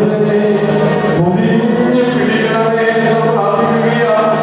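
A man singing a slow devotional chant into a microphone, drawing out long held notes that glide gently in pitch.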